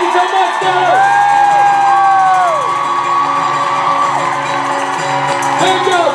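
The end of a live sing-along: an acoustic guitar's chord rings on under several long, overlapping held vocal notes that slide down as they end, with an audience cheering and whooping.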